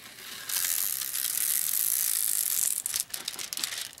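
Clear plastic protective film being peeled up from a diamond-painting canvas's poured-glue layer: a steady ripping crackle lasting about two seconds, then a few crinkles and clicks of the plastic.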